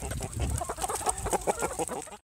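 Poultry clucking in short scattered calls over a low rumble.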